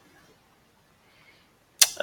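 Faint room tone, broken near the end by a single sharp click just before speech resumes.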